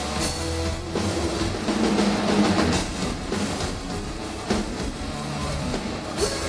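Live hard rock band playing: electric guitar over a full drum kit, loud and continuous.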